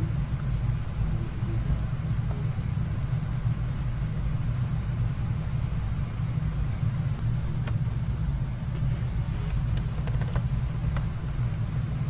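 Steady low hum with a light hiss of background noise, with a few faint clicks in the second half.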